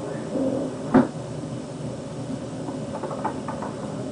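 A single sharp clunk about a second in, over the steady hiss of an old cassette recording, with a few faint ticks near the end.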